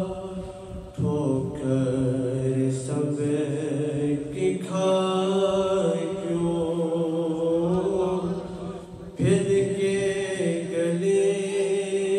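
A male voice recites a naat (Urdu devotional poem) in long, held melodic phrases. It breaks off briefly about a second in and again just before nine seconds, each time starting a new phrase.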